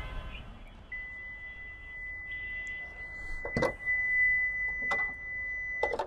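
Hyundai Creta bonnet being unlatched and raised: a few sharp clicks and knocks, the last near the end as it is propped open. A steady high tone sounds behind them from about a second in until just before the end.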